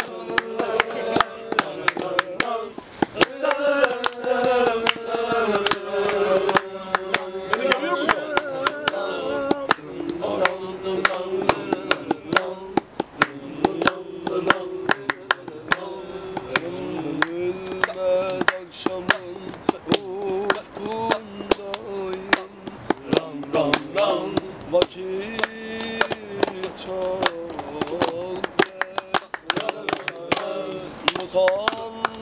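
A young man singing unaccompanied, drawing out long, winding notes, with many sharp knocks or claps beating along throughout.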